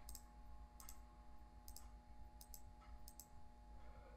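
Faint computer mouse clicks, scattered through the few seconds and some in quick pairs, over near-silent room tone with a faint steady hum.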